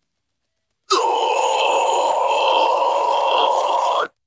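Isolated deathcore harsh vocal: one long scream held steadily for about three seconds, starting about a second in and cutting off sharply at the end.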